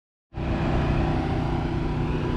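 Steady low rumble of an idling vehicle engine, cutting in abruptly a moment after the start.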